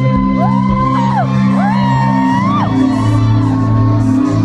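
A band playing live: steady low sustained notes under a high sung line that twice slides up into a long held note and then falls away.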